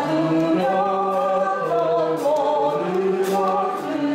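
Accordion ensemble playing a slow gospel song in sustained chords, with a woman singing the melody over it with vibrato.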